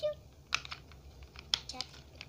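Light plastic clicks and taps from a children's toy makeup compact being handled, with a sharp click about half a second in and a quick cluster of clicks around a second and a half in.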